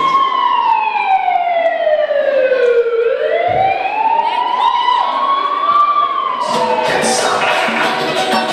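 Siren sound effect in a dance-music mix: a slow wail that falls for about three seconds, rises again, and starts to fall before the beat comes back in near the end.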